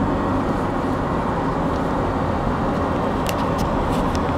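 Steady road and engine noise heard inside a moving car's cabin, an even low rumble, with a few faint light clicks about three seconds in.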